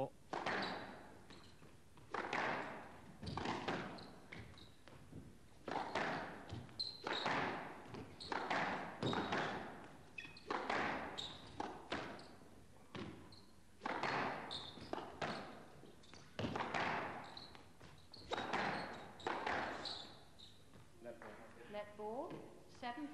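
A squash rally: the ball is struck by rackets and smacks off the court walls about once a second, each hit a sharp crack with a short echo in the hall.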